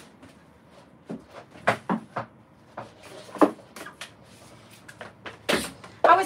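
Scattered light knocks and clicks, a few seconds apart, of someone handling things in a room, with a louder knock near the end; no motor running.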